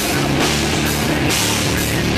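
Heavy rock band playing live at full volume: pounding drum kit with cymbal crashes over a steady low bass-and-guitar chord.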